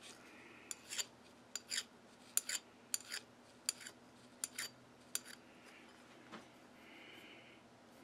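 Hand file drawn across the case-hardened tip of a low-carbon steel part: a series of short, light scraping strokes, mostly in pairs, that stop about five seconds in. The file skates on the hardened skin, barely marking it rather than cutting.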